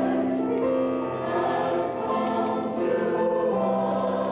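A mixed church choir of men's and women's voices singing slow, held chords that change every second or so, with a few soft sibilant consonants between notes.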